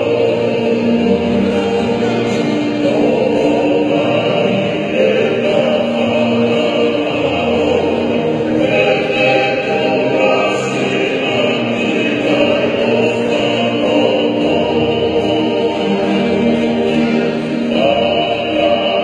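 A men's group singing a Tongan hiva kakala in full-voiced harmony, steady throughout, accompanied by strummed acoustic guitars.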